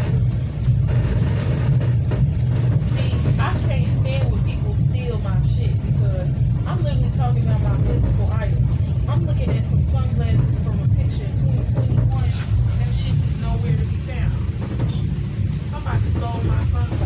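Steady low rumble of a commuter train car in motion, heard from inside the passenger cabin, with indistinct passenger voices over it.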